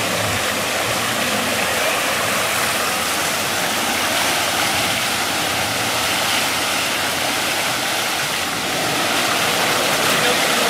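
Steady rushing and churning of muddy water as an SUV, stuck with its front end sunk to the hood in a mud pit, spins its wheels.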